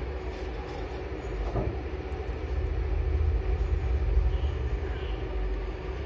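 A steady low rumble, growing a little louder in the middle, with a faint steady hum above it.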